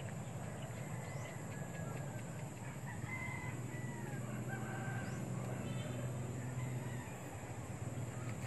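A rooster crowing in the distance, a few thin calls in the middle of the clip, over a steady low hum.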